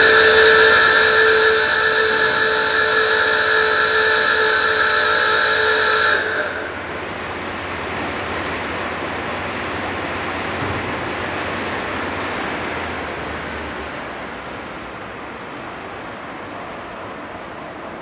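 A timber yard's works hooter sounds one long steady note for about six seconds, then cuts off, signalling the yard shutting down. Beneath and after it the yard's machinery keeps up a broad steady noise that slowly fades toward the end.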